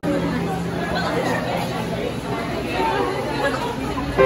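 Indistinct chatter of many people talking at once in a crowded room, with no single voice standing out.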